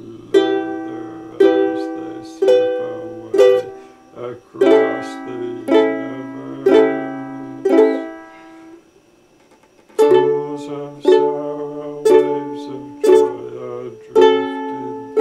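Ukulele strummed in single chords about once a second, each left to ring and fade, with a short pause about nine seconds in before the strumming picks up again.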